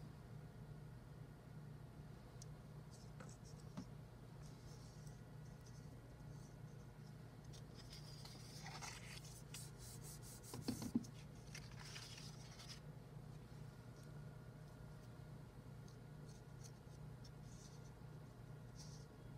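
Faint rustling and rubbing of construction paper being handled, folded shut and pressed flat by hand, with a couple of soft taps about eleven seconds in, over a faint steady low hum.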